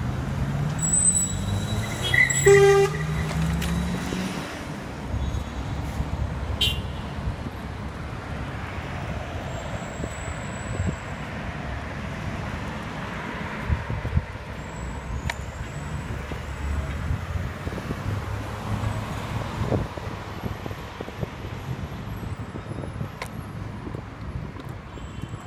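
Street traffic: a vehicle engine rises in pitch as it pulls away, and a car horn gives a short toot about two and a half seconds in, the loudest sound. Steady traffic noise from passing cars follows.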